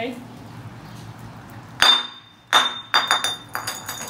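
Small glass jar thrown onto a concrete floor. It hits with a sharp clink a little under two seconds in, bounces, lands again and skitters with a run of ringing clinks without breaking.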